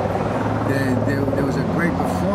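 Leaf blower engine running steadily, a constant drone with a low hum under it.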